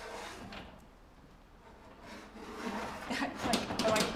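A hand tool scraped against the surface of a painting panel. There is one scrape at the start, then a quicker run of scraping strokes that grows louder over the last two seconds, as wet paint is worked off so the area can be repainted.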